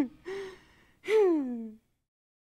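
A man's laughter trailing off: a couple of short laughs, then one longer falling 'haah' about a second in.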